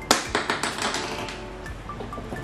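A sharp plastic click, then a quick run of lighter clicks and taps, as parts are handled against a black acrylic aquarium back-filter box, over background music.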